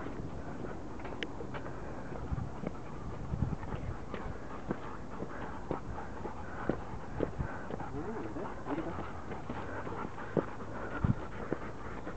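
Footsteps of people and two dogs walking on a dirt trail: irregular scuffs and soft taps over a steady low outdoor background.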